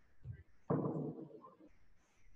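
A weight-plate bumper plate set down on the gym floor: a low thump about two-thirds of a second in that dies away over most of a second, with a lighter knock just before it.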